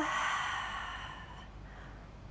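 A woman's long, audible exhale through the mouth during a held stretch, fading away over about a second and a half.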